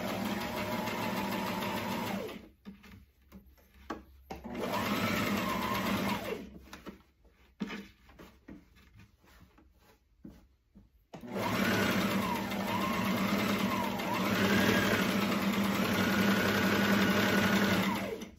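Brother domestic sewing machine stitching an understitch in three runs: a short run at the start, a second run about four seconds in, and a long run from about eleven seconds to the end, its speed rising and falling. Quieter pauses with a few light clicks come between the runs.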